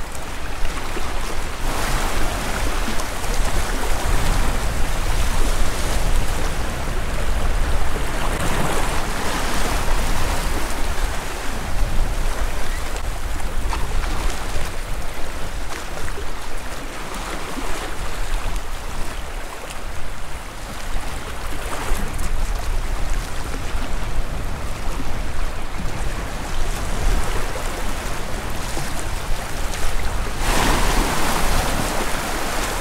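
Sea waves washing over and around shoreline rocks, swelling and easing every several seconds, with wind rumbling on the microphone.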